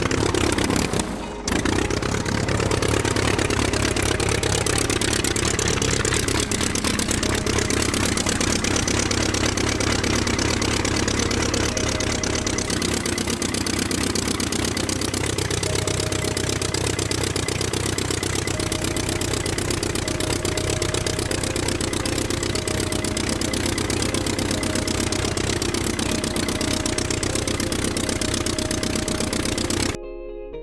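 Small battery-powered DC motor driving a homemade conveyor belt, running steadily with a mechanical rattle, with a brief dip about a second in.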